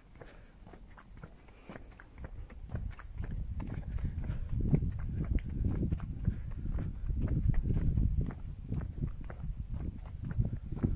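Footsteps of a person walking on an asphalt path, a steady run of soft thuds that grows louder about three seconds in.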